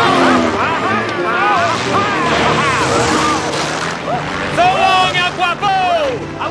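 A small propeller biplane's engine running as it flies low, with men shouting and yelling over it, the noise of the engine swelling about two to three seconds in.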